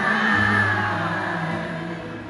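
Live concert music from a band on an arena stage, heard from the crowd: a long held note over sustained chords, with a deep bass note coming in shortly after the start.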